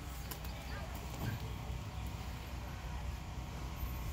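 Low steady rumble of wind on the microphone with a few faint knocks in the first second, as a child's shoes and hands work the plastic holds of a playground climbing wall.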